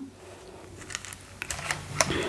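Quiet handling of a sheer press cloth being laid over the ironing board, then a few small clicks about one and a half seconds in as the mini iron is picked up and set down on the cloth, with the cloth starting to rustle under it.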